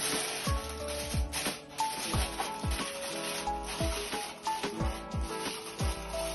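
Aluminium foil crinkling and rustling as it is wrapped and pressed by hand around a metal baking mould, over background music with a beat.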